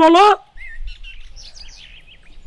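Birds chirping faintly in the background: a quick run of short, high chirps that bend up and down in pitch. They follow a single spoken word, over a low background hum.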